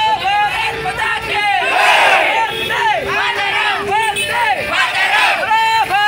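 A crowd shouting slogans together, many raised voices overlapping in a quick, repeated chant.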